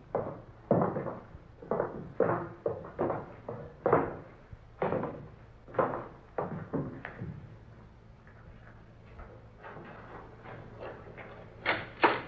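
Radio-drama sound effects of several people's footsteps going down wooden steps through a ship's hatch: a string of knocks about one a second. Then softer clicks and rattles as a cabin door is unlocked and opened, with a sharper knock near the end.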